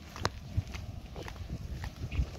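Footsteps of people walking across a dry dirt and concrete yard, a few irregular scuffs and knocks.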